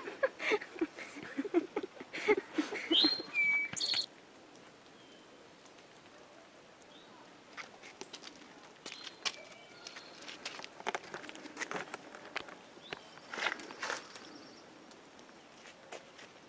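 Brief laughing and vocal sounds in the first few seconds, with a couple of short high bird chirps. After that it is quieter, with scattered footstep clicks on the trail and occasional short bird calls.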